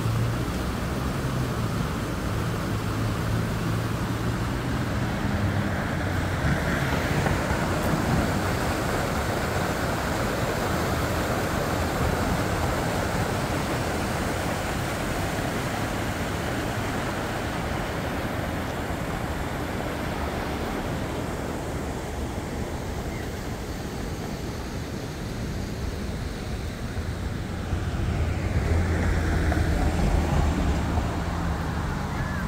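Steady rushing of river water over a shallow, rippling channel mixed with road traffic noise. A low vehicle engine hum fades out after about six seconds, and another car's engine grows louder near the end as it approaches.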